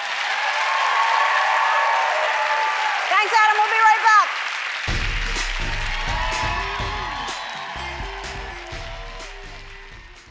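Studio audience applauding and cheering, with one loud cheer about three seconds in. Upbeat closing music with a deep bass beat comes in about five seconds in as the applause dies away, fading toward the end.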